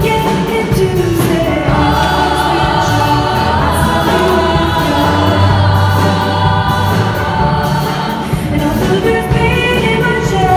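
Show choir of many female voices singing together, with a lead singer on a microphone, over accompaniment with a steady beat and bass. A full chord is held for several seconds in the middle.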